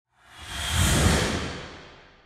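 Whoosh sound effect of an animated logo reveal: a hissing rush over a deep rumble that swells for about a second, then fades away.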